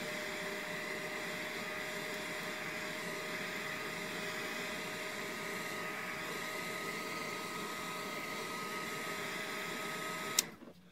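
Handheld hot-air blower running steadily, a constant rush of air with a thin motor whine, drying a freshly sprayed mist test on paper.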